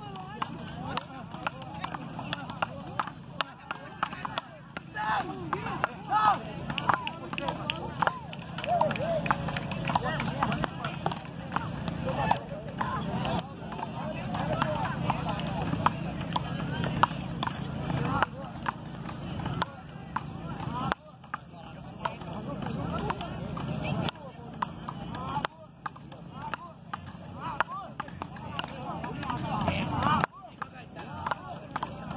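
Voices of people talking nearby over steady open-air background noise, with frequent irregular sharp clicks and knocks.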